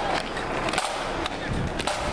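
Street noise from a parade with irregular sharp clicks and knocks, no steady rhythm.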